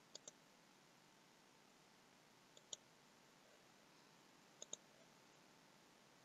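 Faint clicks of a computer mouse in near silence. There are three pairs of quick clicks: one right at the start, one about two and a half seconds in, and one near five seconds.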